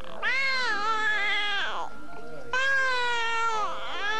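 A baby wailing: two long cries, each about a second and a half, the pitch dropping away at the end of each.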